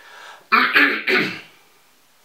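A man clearing his throat in two or three quick pulses, starting about half a second in.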